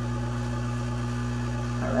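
Hot air rework station's blower running with its heater switched off and the air turned up high, a steady hum and rush of air. This is its cool-down running: it keeps air flowing after the heat is off so it does not overheat, cooling the freshly soldered charge jack.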